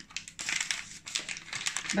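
Plastic sachet of crème caramel powder mix crinkling in the hand in irregular rustles as it is handled to be opened.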